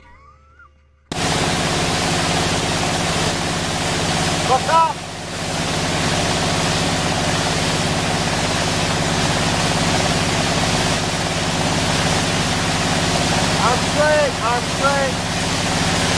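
Ski boat running steadily at towing speed, heard from aboard: a steady engine hum under loud rushing wind and spray noise, starting abruptly about a second in. Short shouted calls come through about five seconds in and a few more near the end.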